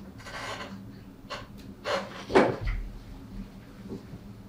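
Handling sounds as a stethoscope is moved from the chest to the side of the neck: a soft rustle, then light clicks and a sharper knock a little past two seconds in, with a brief low thud just after.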